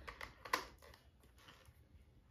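A few light clicks and taps of a plastic handheld body massager and its attachment caps being handled, clustered in the first half second.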